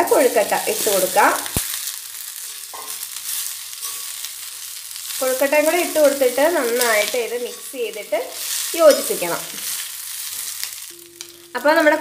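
Steamed rava dumplings sizzling in hot oil with a chilli and curry-leaf tempering in an iron kadai, stirred and tossed with a steel spoon to coat them in the seasoning.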